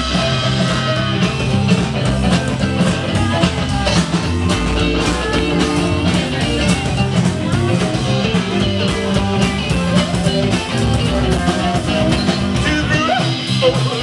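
Live blues-rock band playing loud, with electric guitars over a steady drum-kit beat.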